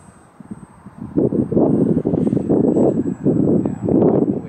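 Wind buffeting the microphone in ragged gusts, loud from about a second in, over a faint steady high-pitched whine.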